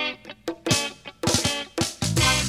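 Hardcore punk demo recording: electric guitar playing short, choppy chords, with drum hits coming in about two-thirds of a second in as a fill.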